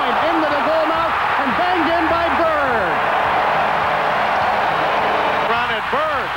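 Hockey arena crowd noise from a TV game broadcast, a dense steady din, with a man's voice over it in roughly the first half and again near the end.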